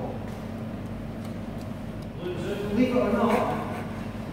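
A man's voice talking indistinctly, loudest in the second half, over a steady low background hum.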